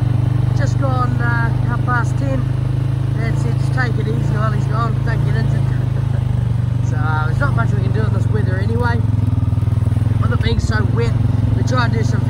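Farm quad bike's engine running steadily as it travels along a rough farm track. Groups of short, high, chirping calls sound over the engine.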